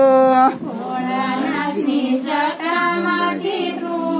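Women singing a Gujarati devotional kirtan without instruments: one voice holds a loud note until about half a second in, then several voices carry the melody together, somewhat quieter.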